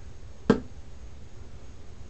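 A single sharp click about half a second in, over a steady low hum.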